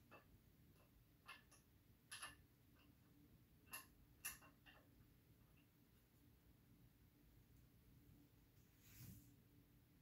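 Near silence broken by a few faint, short clicks and taps of stacked plastic weight containers being handled and settled on a hanging load, about five in the first five seconds, with a soft dull sound near the end.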